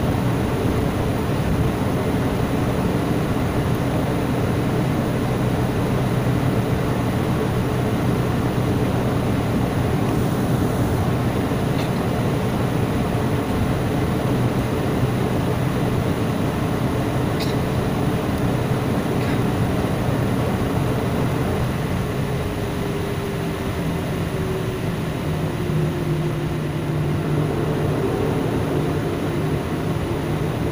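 Airliner cabin noise while the jet taxis: the steady rumble and hum of its jet engines at low power, heard from a window seat. Past halfway, one tone in the hum slides a little lower and a new lower hum joins in.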